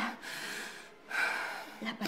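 Two sharp, breathy gasps from a distressed person, with no voiced pitch: one at the start and another about a second in.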